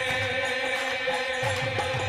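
Devotional mantra-chanting music over a steady held drone, with low drum strokes underneath.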